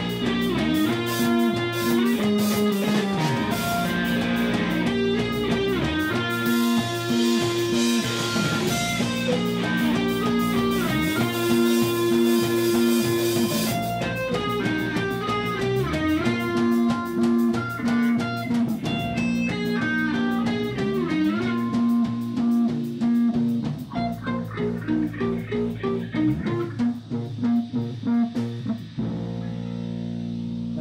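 Live rock band playing an instrumental passage: electric guitar with bending notes over bass guitar and drum kit. The playing turns choppy near the end and stops about a second before the end, leaving a steady tone hanging.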